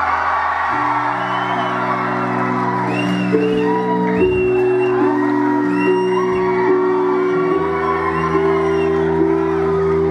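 Live band music in a large hall: sustained keyboard chords over a held bass line, changing every few seconds, with audience whoops rising and falling over the top.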